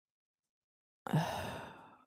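A woman sighs in exasperation about a second in: a brief voiced "uh" that turns into a long breathy exhale and fades away.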